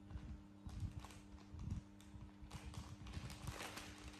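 Soft, scattered low thumps and taps of small bodies and hands moving on a woven floor mat, with a brief rustle about three and a half seconds in, over a steady low hum.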